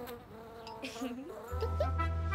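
Cartoon buzzing sound effect of a small flying bee, its pitch dipping and rising about a second in. Low music notes come in about one and a half seconds in.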